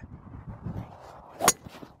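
A single sharp crack of a golf club striking the ball on a tee shot, about one and a half seconds in, over faint outdoor background noise.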